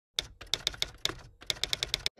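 Keyboard typing sound effect: a run of about a dozen sharp keystroke clicks in uneven bursts, with a short pause near the middle, as on-screen text is typed out.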